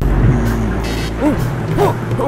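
Cartoon sound effects with music: a loud rushing rumble that starts suddenly, with short sliding tones about a second in.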